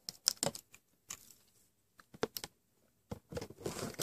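Scissors snipping and levering at the sealed edge of a cardboard headphone box: a string of separate sharp clicks and crunches, then a denser stretch of crackle and scraping near the end.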